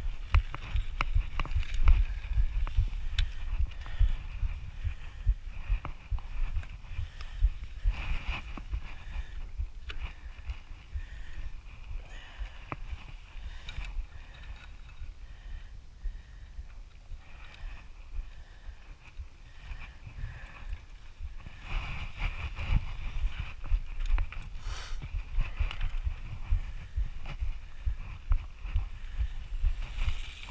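A mountain bike's chain being handled and put back on, with scattered metallic clicks and rattles, over wind rumbling and rubbing on a chest-mounted camera's microphone.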